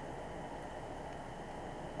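Steady faint background hiss and hum of room tone picked up by the microphone, with no distinct events.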